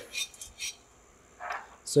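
Toasted sunflower seeds shifting in a non-stick frying pan as it is handled: two faint clinks, then a short sliding rattle at about one and a half seconds.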